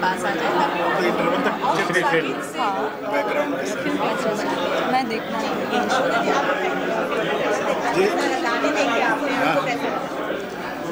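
Several people talking at once: overlapping, indistinct chatter of voices.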